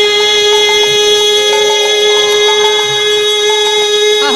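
One held instrumental note of kirtan accompaniment, steady in pitch and rich and reedy in tone, with a few quieter notes changing beside it.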